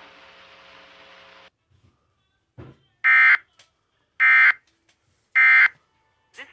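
Three short, buzzy electronic alert beeps about a second apart, coming from an emergency-alert weather stream's audio. Before them a hiss of stream noise cuts off about a second and a half in.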